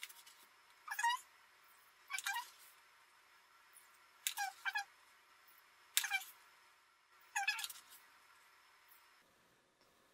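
A metal teaspoon squeaking against the mouth of a plastic bottle as bleach crystals are scooped out: about six short squeaks, each falling in pitch, with pauses between them.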